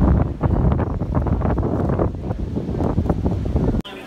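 Wind buffeting the microphone in loud, gusty rumbles, cutting off suddenly near the end.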